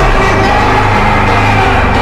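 Loud, bass-heavy edit music: deep sustained bass notes come in right at the start and hold under a sweeping synth line.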